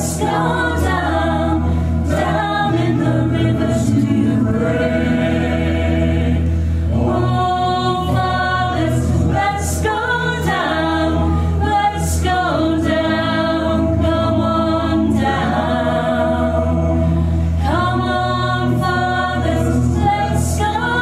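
Vocal music: several voices singing held, gliding notes in chorus over a steady low bass.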